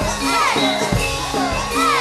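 Live campursari music: a female singer's swooping, ornamented vocal line over a Javanese gamelan ensemble, with a kendang drum keeping a steady beat under held bass notes.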